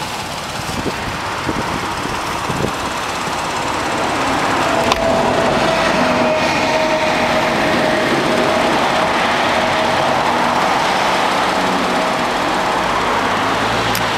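Porsche 911 (991) Carrera Cabriolet's rear-mounted flat-six engine idling, a steady running sound that grows louder about four seconds in and then holds.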